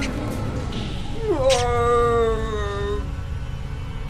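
A single drawn-out wailing cry starts about a second in. It dips, then holds one pitch and sags slightly for about a second and a half, over a steady low rumbling background.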